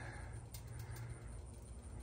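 Quiet background between words: a faint steady low hum with a few faint ticks.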